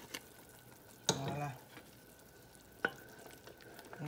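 A metal spoon stirring and scraping in a steel pot of simmering palm nut sauce. There is a brief louder scrape about a second in and a sharp clink of the spoon against the pot near the end.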